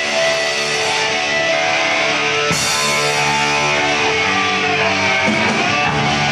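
Hardcore punk band playing live, led by loud electric guitar chords. The chords change about two and a half seconds in and again just past five seconds.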